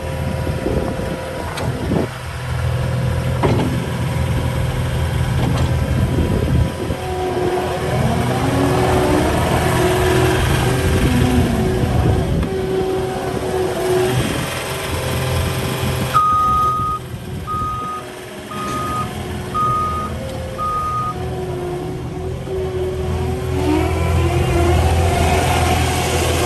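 Caterpillar 259D3 compact track loader's diesel engine running steadily while the machine drives about, with a whine that rises and falls several times as it moves. Its back-up alarm beeps five times, one longer beep then four short ones, a little past the middle.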